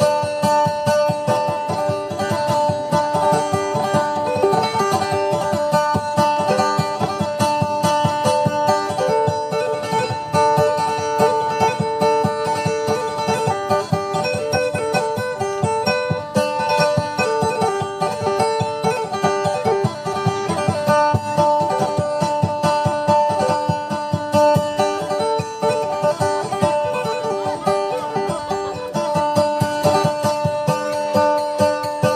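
Kutyapi, the Maguindanao two-stringed boat lute, played fast, with a steady drone under a quick, repeating plucked melody.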